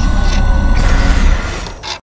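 Closing logo sting sound effect: a loud, noisy whoosh over a deep bass rumble that fades about three quarters of the way through, with a short hiss just before it cuts off.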